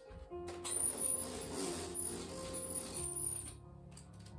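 A window roller blind being raised, its mechanism running for about three seconds, over background music.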